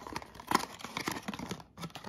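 Small paperboard advent-calendar box being handled and its flap pulled open: a run of light cardboard scrapes and clicks.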